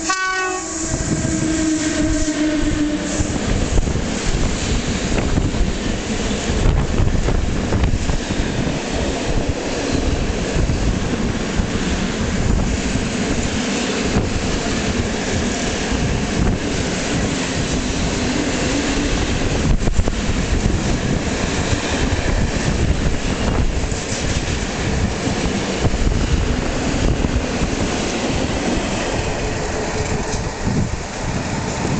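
Electric locomotive sounding its horn for about three seconds as it reaches the platform, then a long freight train of open wagons running through, its wheels clacking over the rail joints.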